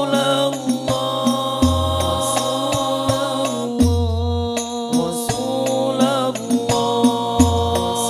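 Male voices singing Islamic sholawat in unison through microphones, backed by an Al-Banjari ensemble of hand-struck frame drums in a steady rhythm, with a deep bass drum note every two to three seconds.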